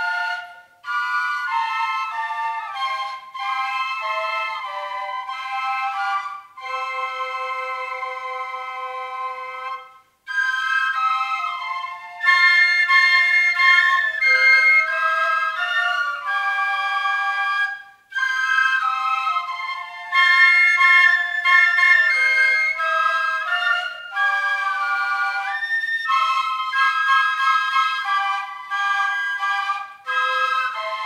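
An ensemble of white transverse flutes playing together in several-part harmony. The music moves in phrases with brief breaks between them, and there is a long held chord about a third of the way through.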